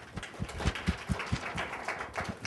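A small audience applauding, a run of irregular hand claps.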